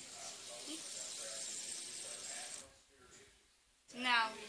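Faint, steady whirring hiss of a spinning fidget spinner's bearing, dying away about two-thirds of the way through.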